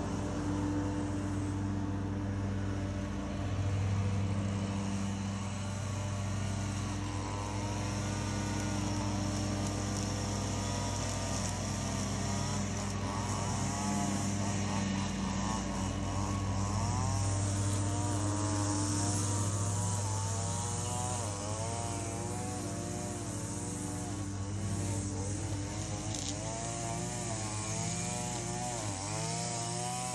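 A small engine runs steadily at a constant pitch as a stand-on mower pulls away. From about seven seconds in, a gas string trimmer joins it, revving up and down over and over, and it grows more prominent through the second half.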